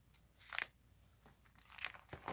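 Plastic card-binder pages crinkling as a page is handled and turned: two short crackles, about half a second in and near the end.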